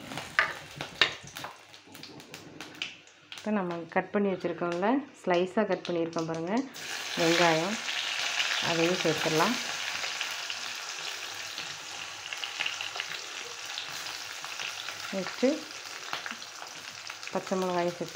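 Sliced onions and green chillies hit hot oil in a steel kadai about seven seconds in, setting off a sudden loud sizzle that carries on steadily as they fry. Before that, a few sharp crackles come from the fennel seeds in the oil.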